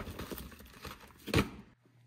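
Rummaging in a plastic storage tote: a plastic-wrapped coil of tubing being lifted out, with rustling and light clatter and one louder knock about a second and a half in. The sound cuts off shortly before the end.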